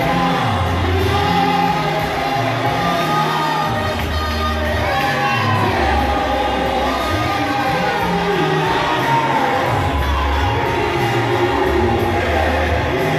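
A church group singing a gospel song together, with voices in the crowd joining in, over an amplified bass line that steps between held low notes.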